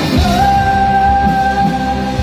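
Rock band playing live: a singer holds one long note, starting about a quarter second in, over electric guitars, bass and drum kit.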